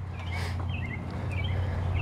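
Birds chirping faintly a few times over a steady low outdoor rumble.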